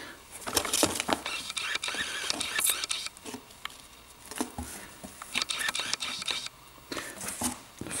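Hands rummaging in a cardboard box: irregular rustling and scraping of cardboard and cloth, with small clicks and knocks, as microfiber towels are pulled out, easing off for a moment about halfway through.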